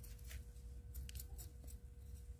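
Faint light ticks and scratches of metal tweezers picking through a succulent's roots and the gritty potting soil during repotting, with a faint steady hum underneath.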